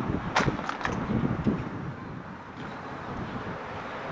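Outdoor street background noise, with one sharp click about half a second in and a few fainter ticks after it.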